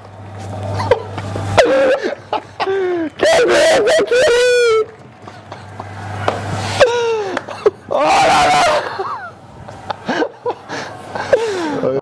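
Two men yelling, wailing and laughing in excitement, their cries sliding up and down in pitch, with several loud shouts.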